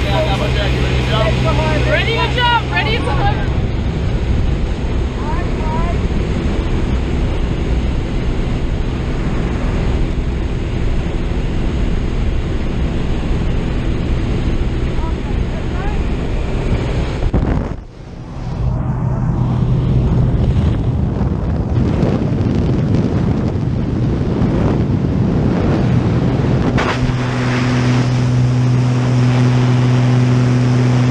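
Single-engine light aircraft's engine and propeller running steadily, heard from inside the cabin with a constant rush of air. Near the end the rush grows louder and brighter as the jump door is open.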